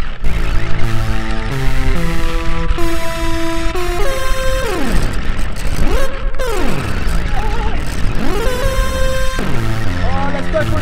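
Synthesizer notes played from a keyboard: several seconds of stepped notes changing about twice a second, then two long pitch bends that swoop down and climb back up, each settling on a held note.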